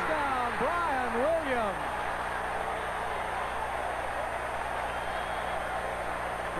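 Stadium crowd cheering steadily at a long touchdown pass, heard through the television broadcast, with a commentator's excited voice over the first two seconds.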